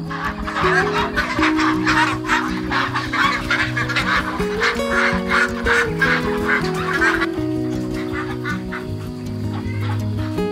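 A flock of domestic ducks quacking in a loud, busy chorus as they come out of their coop, over background music. The quacking dies away about seven seconds in, leaving the music.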